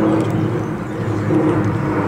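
A steady low engine drone.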